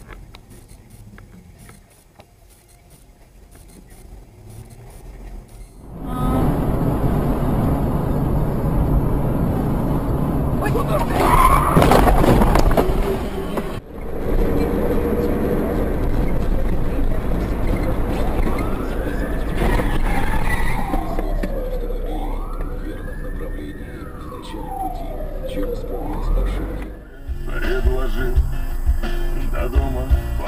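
Dashcam audio of a car on the road: road and engine noise rising sharply about six seconds in, with a loud burst around twelve seconds. Later an emergency-vehicle siren wails for several seconds, its pitch rising and falling in slow sweeps.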